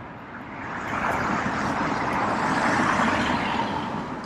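A passing road vehicle: a steady rush of traffic noise that builds over about two seconds and then fades toward the end.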